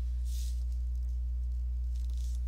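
Steady low electrical hum with a ladder of overtones under the recording, with a faint soft hiss about half a second in.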